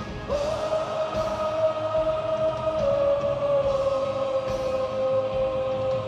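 A male singer holds one long high sung note over a live band through the PA, scooping up into it about a quarter second in and stepping down slightly about halfway through.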